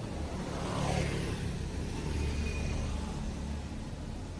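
A motor vehicle's engine running with a low hum, swelling over the first second and then holding steady.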